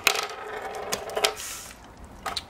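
Small chrome-finished LED bicycle valve-cap lights clinking together and onto a wooden table. The first clink rings briefly like a dropped coin, followed by a few lighter clicks.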